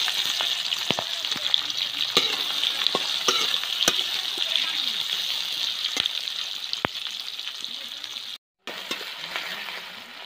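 Sliced onions sizzling in hot oil in a metal wok, the sizzle loudest at first and slowly dying down. A metal spatula scrapes and clicks against the pan now and then as the onions are stirred. The sound cuts out for a moment near the end.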